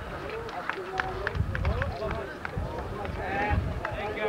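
Indistinct chatter of a crowd, many voices talking over one another, with a low rumble on the microphone that swells twice and a few scattered clicks.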